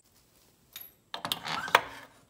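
Rustling and light clicks from hands handling parts around the ATV's drive chain and sprocket. The sounds begin about halfway through, with one sharp click near the end.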